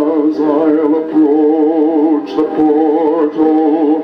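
A vintage phonograph record playing a sacred song: a male singer holds long notes with a wide vibrato. The recording is dull at the top, as on old records.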